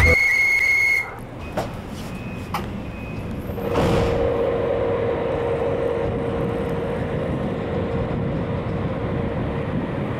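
Regional passenger train pulling out of a station, heard from a passenger coach. A short high whistle sounds for about a second at the start, followed by a few light clicks and knocks. From about four seconds in the coach rolls on with a steady rumble and a held hum.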